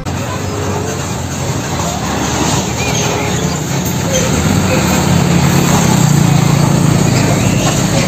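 Street traffic noise with a car carrier truck's engine running, its low hum growing louder through the second half.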